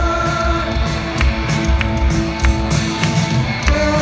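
Live rock band playing through a concert PA, heard from within the crowd: steady drum hits, electric guitars and sustained melodic notes.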